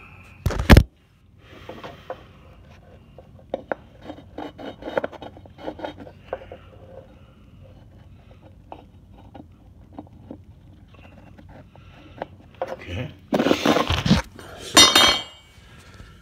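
Handling noise as tools are worked on a plywood floor: a sharp knock about a second in, scattered small clicks and scrapes, and a louder clatter with some metallic ringing near the end.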